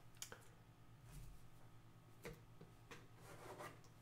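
Near silence: faint rubbing of trading cards handled in the fingers, with a few soft clicks as one card slides off the stack.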